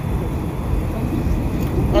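Steady low rumble of street background noise, without speech.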